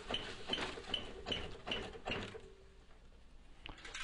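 Wet concrete pouring from a tipped mixer drum down a slide chute into a hopper, with a light mechanical squeak repeating about twice a second and scattered clicks; it all dies down a little past halfway.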